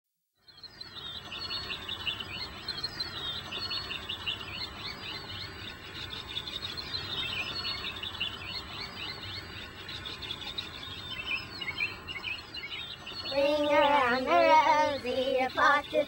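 Many songbirds chirping and singing at once, calls overlapping thickly. About thirteen seconds in, a louder voice comes in, singing with a wavering pitch over the birds.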